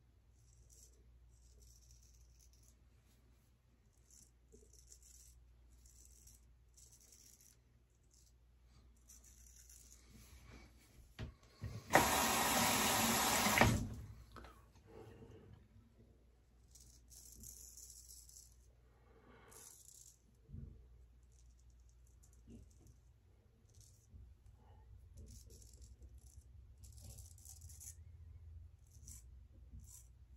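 Straight razor strokes scraping through stubble on a lathered face: short, faint rasps, one after another, pausing now and then. About twelve seconds in, a louder rattling noise lasts about two seconds.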